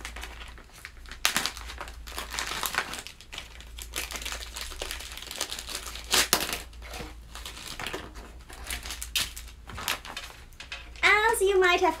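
Clear plastic bags crinkling and rustling as they are handled and pulled open, with irregular louder crackles.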